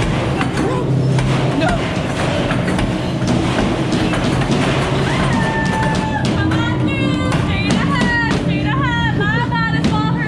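Haunted-attraction soundtrack playing loudly: music with a steady low drone and scattered clicks and knocks. About halfway in, a string of quick, wavering high-pitched cries starts and repeats a few times a second.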